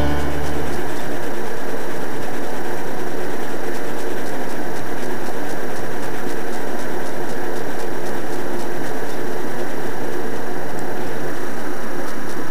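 Steady, loud, even hiss with no rhythm or change in pitch, like recording noise or static.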